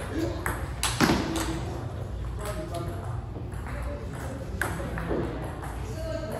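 Table tennis ball clicking off paddles and the table in a quick exchange. The loudest hit comes about a second in, and the rally ends there, with one more tap of the ball later.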